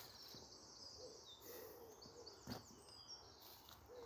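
Faint woodland birdsong: small birds chirping and trilling high, with a few soft, low hooting notes from another bird.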